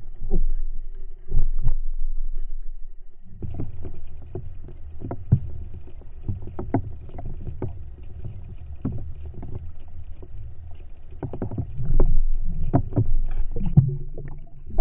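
Muffled underwater noise of a camera housing moving through water: a low rumble with irregular knocks and clicks, which bunch up and are loudest near the end.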